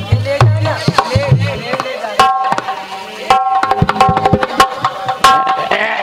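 Harmonium and hand drums playing a loud, fast instrumental passage. Quick drum strokes run throughout, and held harmonium chords come in about two seconds in and sound again twice.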